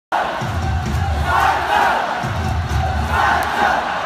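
Large baseball stadium crowd cheering and chanting together, with a deep pounding beat in two runs, starting about half a second in and again just past two seconds.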